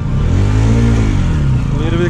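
Motorcycle engine running at low speed, revving up and easing back, its pitch rising then falling. A person's voice starts near the end.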